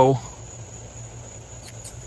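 Crickets chirring in a steady, thin, high continuous tone, with the last word of a man's speech fading out at the very start.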